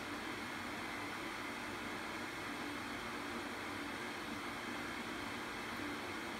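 Steady, even background hiss of room noise, with no distinct sound standing out.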